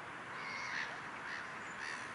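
A bird calling three times in quick succession, short harsh calls over a steady background hiss.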